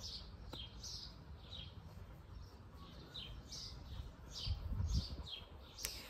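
Small birds chirping faintly, a short high chirp that falls in pitch repeating every half second or so, with a brief low rumble about four and a half seconds in.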